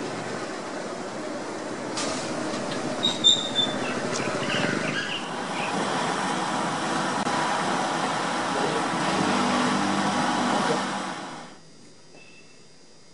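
Steady roar of a gas burner heating a wooden barrel steamer of glutinous rice, with steam escaping from under its cloth cover. A few short high squeaks come about three seconds in, and the noise fades out near the end.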